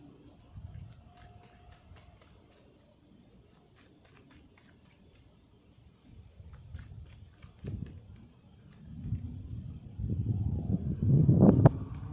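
Road traffic: quiet at first, then a passing vehicle's engine builds over the last few seconds, rising and falling in pitch as it gets loud.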